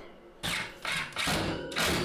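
Cordless drill driving wood screws through a plywood end panel into a wire shelf, in three short bursts.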